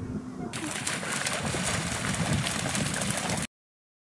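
Shoreline ambience: a steady rushing of wind and water, which cuts off abruptly into silence about three and a half seconds in. Before it, a muffled sound with a low hum ends about half a second in.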